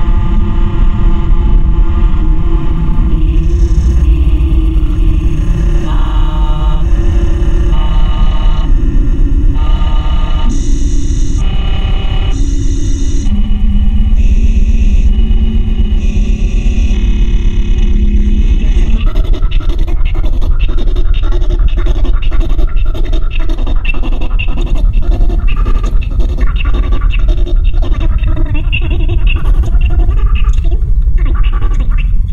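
Loud improvised drone music: a heavy low drone under blocks of held tones that shift about once a second. About two-thirds of the way in, it breaks into a rapid, stuttering, crackling texture.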